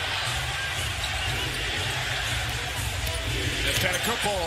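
Basketball arena crowd noise with music and a deep steady rumble underneath, and a basketball bouncing on the hardwood court.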